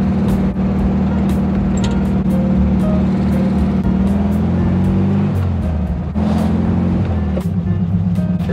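Air-cooled flat-four engine of a 1966 VW Beetle running as the car drives, heard from inside the cabin with the sunroof open. The engine note drops and shifts about four to five seconds in as the car slows and changes speed, then steadies again.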